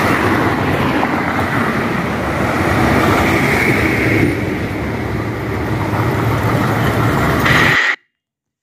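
Traffic on a highway: a loud, steady rush of passing vehicles and tyres on the road, which cuts off suddenly near the end.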